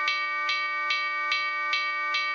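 A music cue: a held, steady chord with a sharp tick a little over twice a second.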